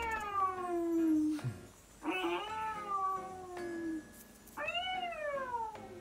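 Cat meows played by Amazon Alexa on a Fire TV Stick through the TV's speaker: three long meows, each rising briefly and then falling in pitch.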